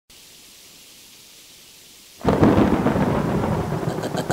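Storm sound effect opening a rap track: a faint rain-like hiss, then about two seconds in a sudden loud thunderclap that rumbles on.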